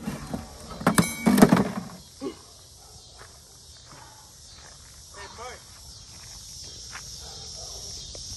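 Hockey stick smashing an acoustic guitar on gravel: a sharp crack at the start, then two heavy crashes about a second in. After that, footsteps on gravel.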